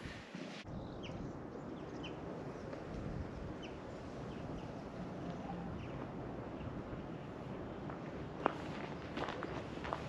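Open-air background noise with a few faint, short bird chirps in the first few seconds, then footsteps in the last second and a half.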